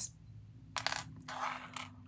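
Small metal charms and a can pull tab clinking and sliding on a board: a few light clicks just under a second in, a brief scrape, then another click near the end.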